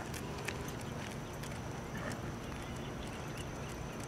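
Footsteps of a person and a dog walking on asphalt: light, irregular clicks of shoes and claws on the pavement over steady outdoor background noise.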